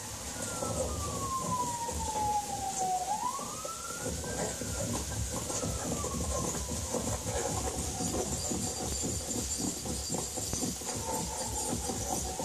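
Police car siren in a slow wail, heard through a television's speakers. It falls in pitch over about three seconds, rises again, then falls slowly, over a steady low rumble.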